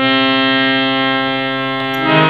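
Harmonium holding one long reed note steadily for the whole stretch, over a continuous low drone.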